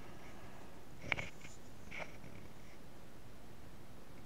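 Faint handling noise from a handheld camera being swung round a small room: one sharp click about a second in and a couple of softer ticks, over a steady low hiss.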